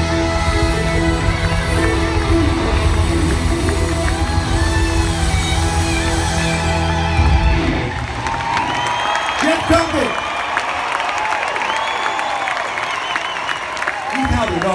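A rock band with electric guitar and a backing orchestra, amplified live, ends a song on a loud held chord that stops about halfway through. A large crowd then cheers and shouts.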